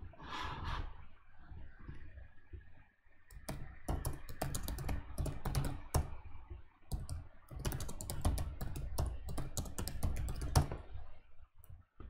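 Typing on a computer keyboard: quick runs of keystrokes starting about three seconds in, with a short pause in the middle, stopping shortly before the end.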